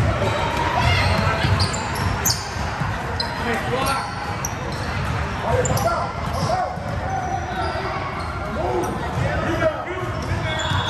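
Indoor youth basketball game: a ball bouncing on the hardwood court and sneakers squeaking as players run, over a din of voices from players and spectators echoing in the large gym.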